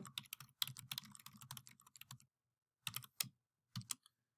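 Typing on a computer keyboard, faint: a quick run of keystrokes for about two seconds, a short pause, then a few more keystrokes near the end.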